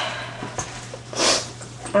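The tail of a girl's laugh fading out, then a short breathy hiss about a second in, like a sniff or exhale.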